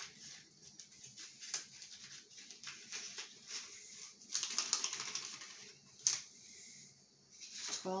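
Torn cardboard and clear-plastic pencil packaging crinkling and crackling with many small clicks. There is a longer burst of crinkling about halfway through and a sharp click shortly after.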